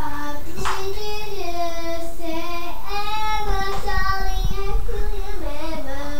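A young girl singing a praise song on her own, holding long notes that slide up and down in pitch.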